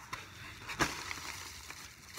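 Cardboard shipping box being handled and opened: faint rustling with one sharp snap about a second in.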